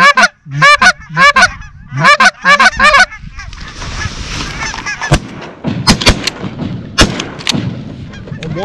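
Loud, rapid goose honks repeating about every third of a second for the first three seconds. Then a rustle, and a volley of about five shotgun shots in quick succession between five and seven and a half seconds in, as hunters fire on passing geese.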